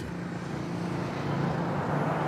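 Street traffic: a motor vehicle's engine hum with road noise, slowly growing louder.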